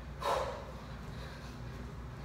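A woman's single forceful breath out, a short huff just after the start, from the strain of Swiss ball knee-tuck and push-up sets; after it only a low steady room hum.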